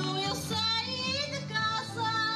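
Azorean folk music for dancing: strummed string accompaniment under a high, wavering melody line.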